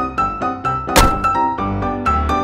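Background music, with one loud thunk of a car door about halfway through.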